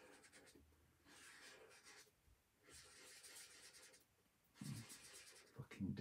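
Felt-tip marker drawing on sketchbook paper: faint scratchy strokes in three short runs.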